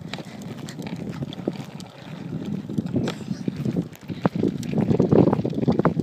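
Crackling, rattling rumble of a toddler's bike with training wheels rolling over a concrete sidewalk, growing louder toward the end.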